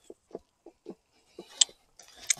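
Knee steering bar of a Segway Ninebot S Max hoverboard being twisted left and right to work it loose: a run of short faint knocks, then one sharper click about one and a half seconds in.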